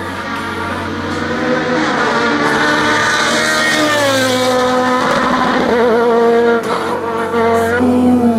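A sport prototype race car's engine at high revs, its pitch climbing and then dropping at a gear change about four seconds in, with background music.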